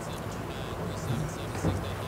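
A pause in the talk: steady low room tone of the studio, with a few faint small noises and no clear speech.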